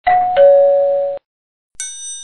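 Doorbell chime ringing a two-note ding-dong, a higher note then a lower one, which cuts off sharply after about a second. A bright, high ringing ding starts near the end.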